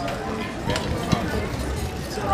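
Indistinct chatter of several people talking at once, with a couple of light clicks about a second in.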